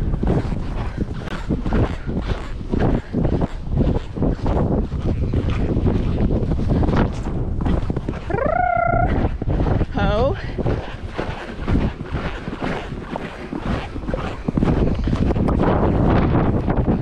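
Wind buffeting the microphone throughout, over the noise of the horse being ridden. About eight seconds in there is a short rising call, and a wavering one follows about a second later.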